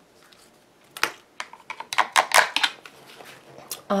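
Dog digging and scratching at couch cushions: a quick, irregular run of scratchy rustling strokes from about a second in until near the end.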